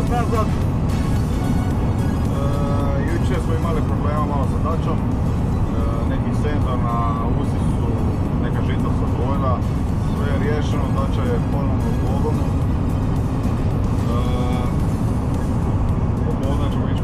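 Loud, steady road and engine drone inside a van's cab at motorway speed, with a man's voice coming and going over it.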